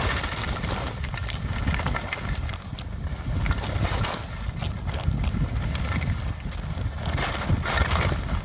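Skis hissing and scraping over snow through a downhill run, with a steady rumble of wind buffeting the microphone.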